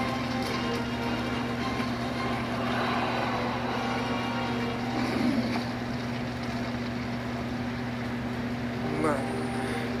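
Steady low drone with several held tones underneath, swelling slightly about five seconds in.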